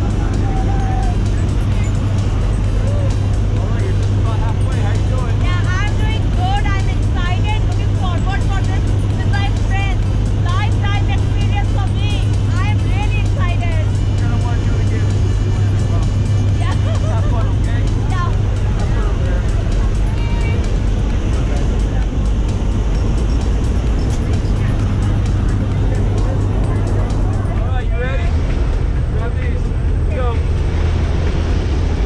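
Steady low drone of a skydiving jump plane's engine and propeller, heard inside the cabin in flight, with rushing air noise over it. Voices rise faintly above the drone now and then.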